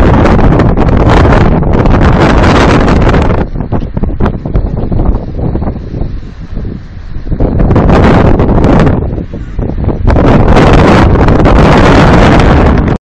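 Wind buffeting a handheld camera's microphone in loud, rumbling gusts, easing for a few seconds in the middle before picking up again.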